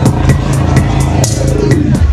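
Live rock band playing: drums keep a steady beat of about four hits a second over a low bass line.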